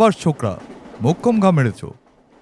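A man's voice making two drawn-out vocal sounds, each falling in pitch.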